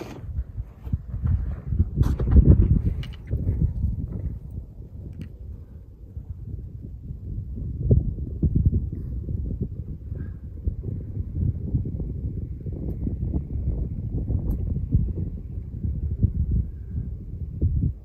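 Wind buffeting the microphone: a low, gusting rumble with no tone in it, with a few sharp knocks about two to three seconds in.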